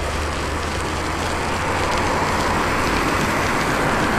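Steady hiss of tyres on a wet road, with wind on the microphone of a moving bicycle. It grows a little louder toward the end as a car overtakes close alongside.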